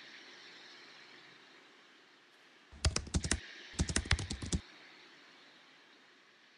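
Two quick runs of sharp plastic clicks, about a second apart, from a camera lens being handled and its caps twisted.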